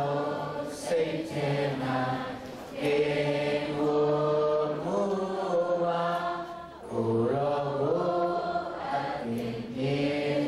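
Slow singing of a hymn-like melody in long held notes that step from one pitch to the next, with a short break just before the end.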